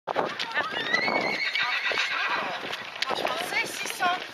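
Footfalls of a group of runners on a paved path, an irregular patter of many feet, with voices and one long high call in the first couple of seconds.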